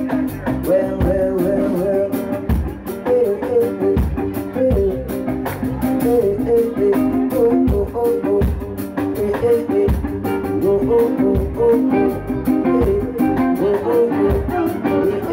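Live reggae band playing, with electric guitar to the fore over bass and drums.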